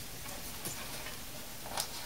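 A few faint, light clicks over a steady background hiss: the metal casing and wiring of an opened computer power supply knocking lightly as it is turned over in the hands.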